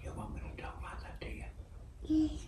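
Soft, hushed whispering.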